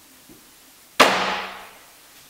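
A single loud, sharp bang about a second in, its ring dying away over most of a second.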